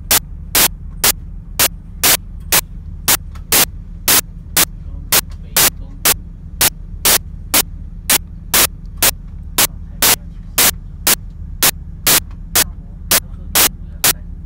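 Sharp clicks repeating about two and a half times a second, some in close pairs, over a steady low hum.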